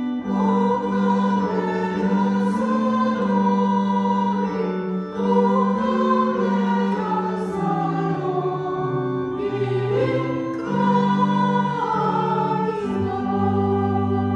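A small choir singing a hymn in sustained phrases of a few seconds each. Near the end a steady, held organ chord comes in beneath the voices.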